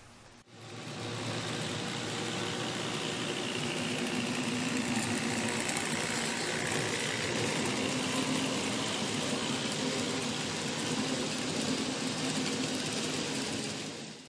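N scale model train running along shelf-layout track: a steady hum of the small motor with rolling wheel noise. It starts about half a second in and stops abruptly at the end.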